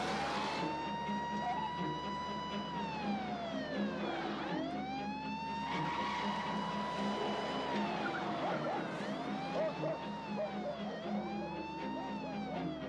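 Siren of a Chevrolet emergency vehicle wailing as it pulls away: long sweeps that rise, hold and fall, becoming shorter and quicker near the end.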